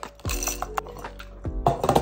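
Background music with a steady beat, over coffee beans clinking and rattling as they are tipped from a plastic measuring spoon into the stainless steel bowl of a Krups electric coffee grinder, mostly in the first half second, followed by a few light clicks.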